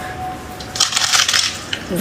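Crisp crackling and crunching starting about a second in: a hard white coating on a ball is squeezed by hand until it cracks and breaks apart into flakes.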